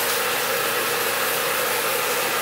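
Steady whirring noise with a faint low hum, like a small motor or fan running.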